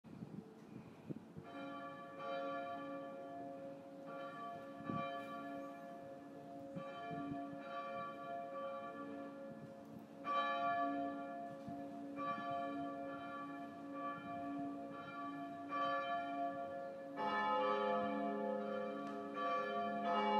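Church bells ringing: a series of irregular strikes, each leaving a long ringing hum that overlaps the next, with a lower tone joining near the end.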